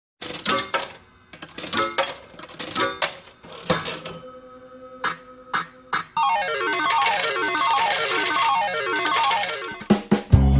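Slot machine sound effects: sharp clicks and short chiming dings with coin-drop sounds, then past the middle a busy electronic jingle of rapid falling note runs, like a slot machine's win tune, which stops just before the end.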